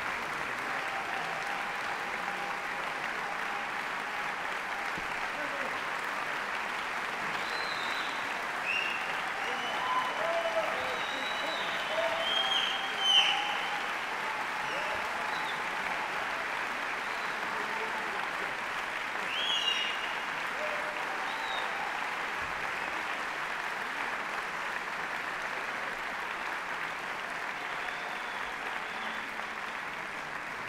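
A concert-hall audience applauding steadily after an orchestral piece, with scattered cheering shouts rising above the clapping in the middle, loudest about thirteen seconds in; the clapping eases slightly near the end.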